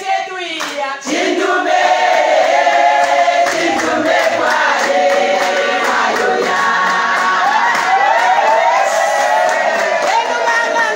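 A group of women singing a gospel song together without instruments, with handclaps keeping the beat. The singing grows louder about a second in and carries on steadily.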